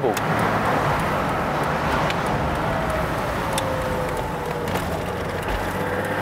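BMW E21 323i straight-six engine running at a steady cruise, with wind and road noise rushing into the open-topped cabin. A faint whine dips in pitch through the middle and rises again near the end.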